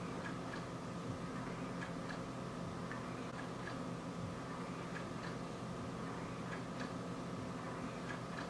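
Steady low electrical hum of room tone with faint light ticks scattered at uneven intervals.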